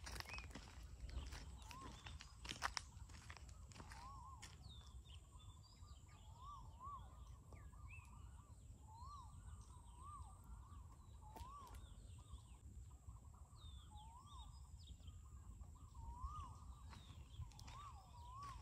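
Faint open-country ambience: a bird repeats a short whistled note that rises and falls, every second or two, with scattered higher bird chirps. Under it are a thin steady high tone and a low rumble, and a few sharp clicks come in the first three seconds.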